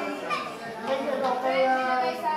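Several people talking over each other, with children's voices mixed in.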